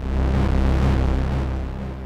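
Synthesizer holding a low C note whose pulse width is driven by a ring modulator, giving a steady low tone with a regular beating pulse, the downward saw-like motion of the difference frequency between the ring modulator and the note. The note fades gradually toward the end.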